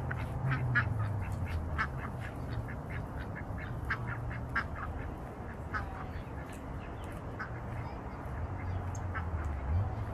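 Ducks quacking, many short quacks in quick succession that thin out in the second half, over a low steady hum.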